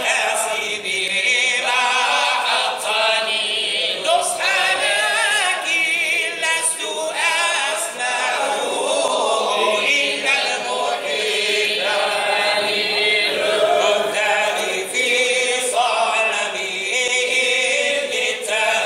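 A large group of men chanting devotional verses together in unison, unaccompanied by instruments, in long, drawn-out sung lines.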